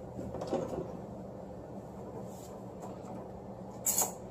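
Quiet handling noises as braided fishing line is pulled and worked by hand: a few soft knocks in the first second and one short, sharp swish near the end, over a steady low hum.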